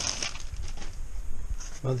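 A plastic bag crinkles briefly at the start as a cardboard model-train box is slid out of it. Dull low handling bumps follow as the box is set down on a carpet. A man says "Well" near the end.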